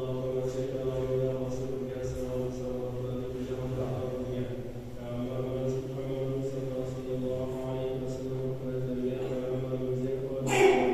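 Slow droning vocal chant, its pitch held almost steady.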